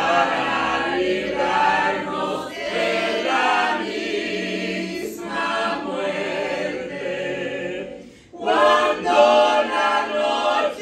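Unaccompanied singing of a Spanish-language hymn, led by a woman's voice with other voices joining, breaking briefly between lines about eight seconds in.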